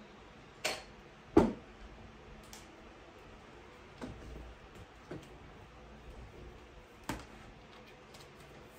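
A few scattered knocks and clicks from someone rummaging for a cord and moving about a room. The loudest is a thud about one and a half seconds in.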